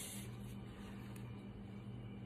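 Faint room tone with a steady low hum and one light tap a little past a second in.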